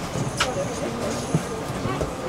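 Voices and movement of passengers inside a stopped city bus with its door open, over the low hum of the bus. There is a brief falling squeal just under half a second in, and a short knock a little past the middle.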